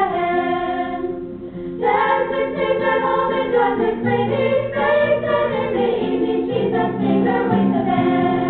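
A girls' high school and middle school choir singing in harmony with acoustic guitar accompaniment, holding long notes, with a brief breath about a second in before the next phrase starts.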